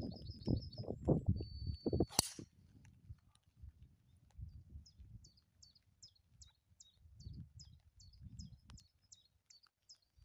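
A driver strikes a golf ball off the tee about two seconds in: a single sharp crack, the loudest sound here. After it a small bird sings a short chirp over and over, about three times a second.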